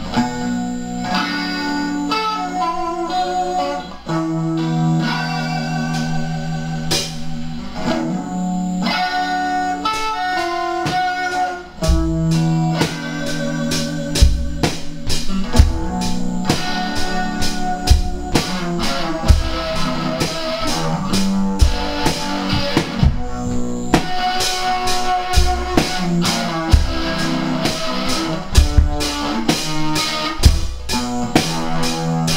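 Instrumental lo-fi rock jam: electric guitar through effects pedals and bass play sustained chords and notes. A drum kit joins about twelve seconds in, with steady kick and cymbal hits.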